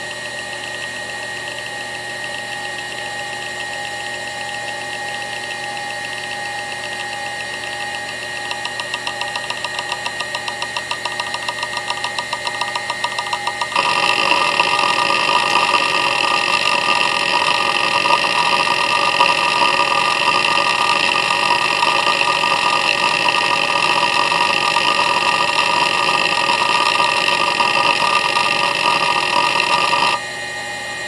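Seagate Medalist ST31276A IDE hard drive running with a steady spindle whine. Its heads start seeking in rapid, even clicks about a third of the way in, and about halfway through the seeking turns louder and busier and keeps on.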